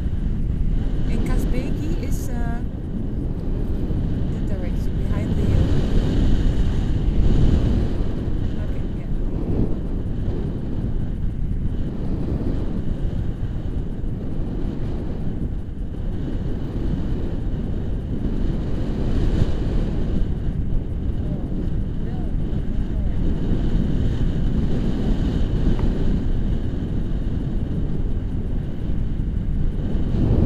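Wind rushing over an action camera's microphone in paraglider flight: a steady, deep rush of noise throughout.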